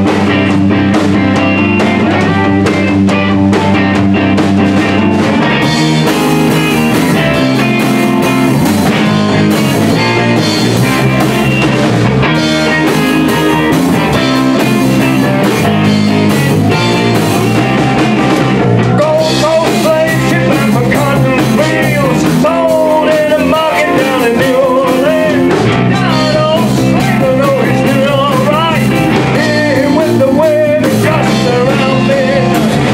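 Live rock band playing loudly: drum kit and electric guitars, with a wavering lead melody line coming in during the second half.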